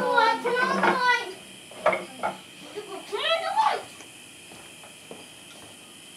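Indistinct voices talking, with a few light knocks about two seconds in.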